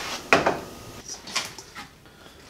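A ceramic bowl set down on a kitchen countertop with one sharp clack, followed by a few lighter clicks and knocks.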